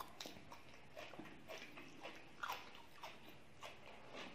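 Close-up eating sounds of rice with chickpeas being eaten by hand: faint chewing with irregular small smacks and clicks, the loudest about two and a half seconds in.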